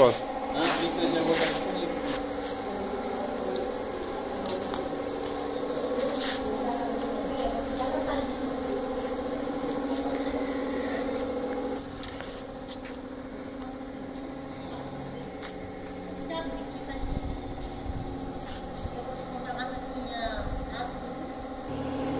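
A steady mechanical hum with faint, indistinct voices; the overall level drops a little about twelve seconds in.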